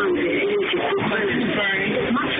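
Indistinct chatter of several overlapping voices, none standing out, at a steady level.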